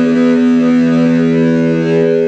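Electric guitar, a Telecaster-style solid-body, holding a chord that rings out steadily without new strums. It is the closing chord of the piece, sustaining until the recording cuts off.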